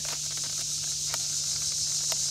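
Steady, high-pitched chirring of insects in summer woodland, with a low even hum underneath and a couple of faint ticks.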